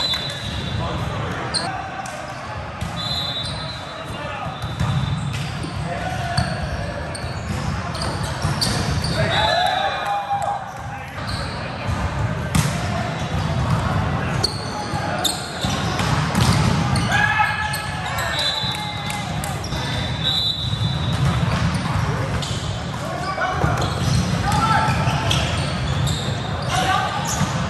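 Indoor volleyball play in a large echoing hall: balls struck and bouncing on the court amid players' voices and calls from several courts, with a few short high squeaks.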